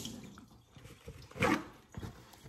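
A kitchen sink tap shuts off after hand-washing, leaving a few faint drips. About halfway through comes a short, sharp rustle of a paper towel as wet hands are dried.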